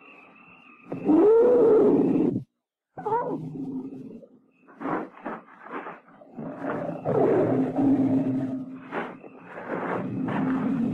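Radio-drama sound effect of a lioness roaring and growling in several calls: a loud call about a second in, a short call after a brief dead gap, a few short sounds, then a longer call near the end.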